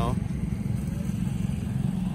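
Steady low engine rumble of motorcycle traffic, with no clear pitch.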